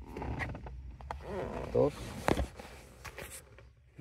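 Handling noise from a screw being taken out of the plastic steering-wheel cover: scraping and rustling of hand and tool against the plastic, then a sharp click a little after two seconds in, followed by a brief scratchy stretch.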